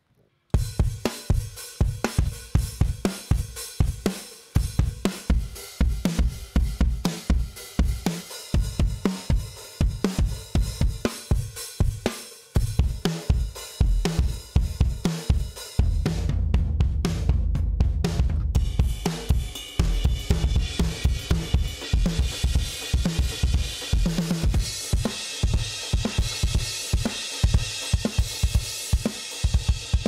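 Rock drum patterns from the UJAM Virtual Drummer BRUTE sampled drum plugin: kick, snare, hi-hat and cymbals playing grooves and fills, starting about half a second in. The kit and pattern change several times as different drum kits are auditioned, with more cymbal wash in the later part.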